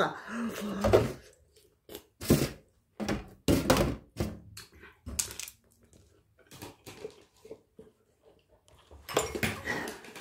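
Scattered knocks and thuds with quiet gaps between them, from peeled tangerines and kitchen containers being handled and set down on a metal tray.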